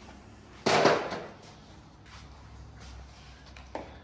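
A single sharp clatter of tools being handled at the engine stand, dying away within half a second, followed by a faint click near the end.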